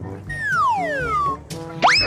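Cartoon-style sound effects over background music with a steady beat: a long whistle-like glide falling in pitch for about a second, then a quick rising glide near the end.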